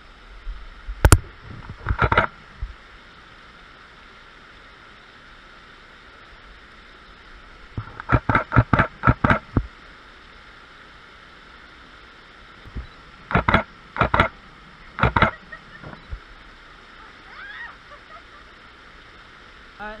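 A small creek waterfall rushing steadily. Over it, a DSLR camera shutter fires in quick bursts: a click about a second in, another short burst at two seconds, a rapid run of about seven clicks near the middle, and a few more a few seconds later.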